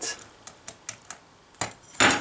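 Light, irregular clicks and taps of a wooden toothpick prodding hard sugar-shell candy halves on a wooden cutting board, about eight in two seconds, one louder click over halfway through.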